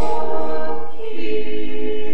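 Mixed church choir singing sustained chords, moving to a new chord about a second in.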